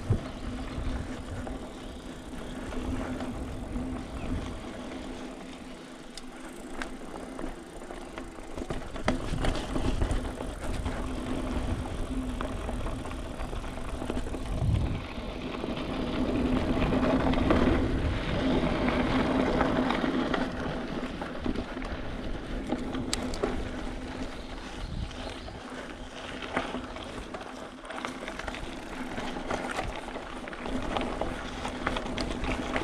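Mountain bike riding along a dirt singletrack: tyres rolling on dirt and the bike rattling, with a steady low hum throughout. It gets louder for a few seconds a little past the middle.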